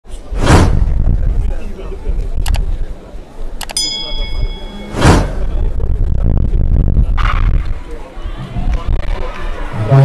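Edited intro sound effects over outdoor stadium background noise: a whoosh about half a second in and another, louder whoosh at about five seconds, with a ringing chime-like ding just before the second. Under them runs a steady low rumble.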